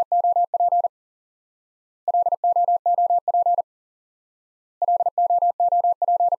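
Morse code at 40 words per minute: a single steady beep keyed in fast dots and dashes, in three bursts about a second and a half long with short silences between. The bursts are the word "LOOP" sent three times over.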